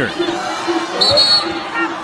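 A referee's whistle blown once, a short high blast about a second in, calling a foul, over steady basketball-arena crowd noise.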